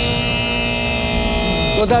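Television show's theme-music sting ending on one held, many-toned chord, which stops just before the end as a man's voice comes in.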